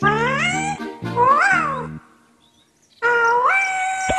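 A cartoon mushroom character's high, squeaky voice calls in two pitch glides over cheerful children's music: one rising, then one rising and falling. The sound cuts off about two seconds in. After a second of silence, a high call rises in steps near the end.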